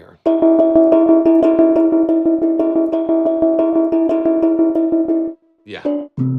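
A tempo-synced bell synth patch ("BPM Bell") in PlugInGuru Unify, played from a MIDI keyboard: a held chord pulsing in rapid even repeats, about eight a second. It cuts off suddenly about five seconds in.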